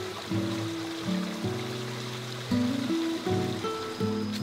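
Background music of sustained notes changing every half second or so, over a steady hiss of running water.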